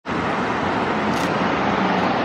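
Steady hiss of road traffic passing on a busy multi-lane street, cars and tyres on the road with no single vehicle standing out.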